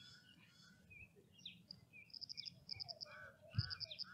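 Birds chirping faintly in the background, with short rapid high trills repeating from about two seconds in, along with a few lower notes, and a brief soft knock near the end.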